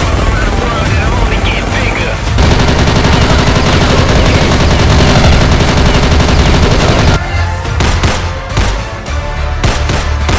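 Rapid machine-gun fire from a film soundtrack, mixed with loud background music. After about seven seconds the dense fire gives way to separate sharp hits over the music's beat.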